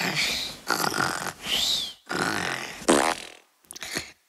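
Cartoon sound effects: a string of about six short, raspy bursts, some with squeaky rising and falling pitch, the last ones broken up by short silences.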